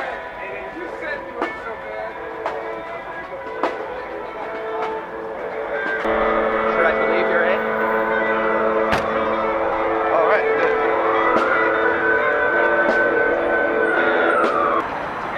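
A crowd of electric guitars through small portable amplifiers playing layered, sustained chords and notes together, with scattered pick strikes. The sound thickens and grows louder about six seconds in. A high tone glides and then rises and holds near the end.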